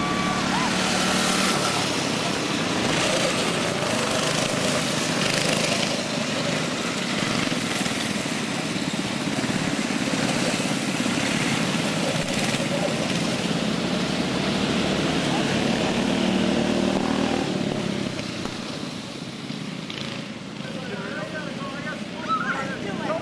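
A small engine, likely a go-kart's, running steadily under the indistinct voices of people talking, with a constant hiss over it all.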